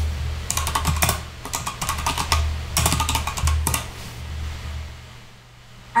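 Typing on a computer keyboard: several quick runs of keystrokes over about three seconds, stopping a little before four seconds in.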